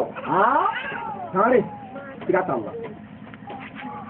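A voice calling out in a few short phrases with sharply rising and falling pitch, louder in the first half and fading after about three seconds.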